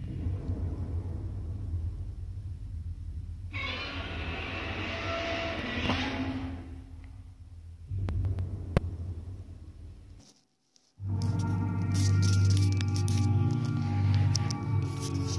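Deep, steady rumble and hum of a film's opening soundtrack playing from a TV, with a brighter swelling noise layered over it from about four to seven seconds in. After a brief dropout about ten seconds in, music starts, louder.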